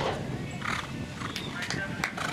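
A horse's hooves landing and cantering on a sand arena after clearing a show-jumping fence, with a voice in the background.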